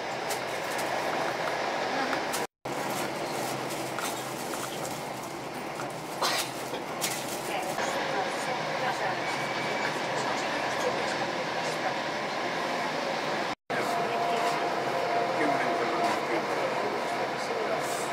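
Steady running noise heard inside a passenger train carriage, with faint voices in the background. The sound drops out abruptly twice where clips are joined.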